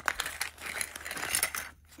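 Paper blind bag crinkling and rustling as hands open it and pull small plastic toy pieces out, with a few light clicks; it dies away briefly near the end.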